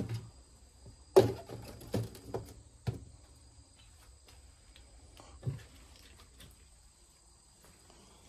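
Clear plastic bins and a terracotta pot being handled and set down on a wooden table: a series of hollow knocks and clunks, the loudest about a second in, then one more after a pause. A steady high insect chorus, typical of crickets, runs behind.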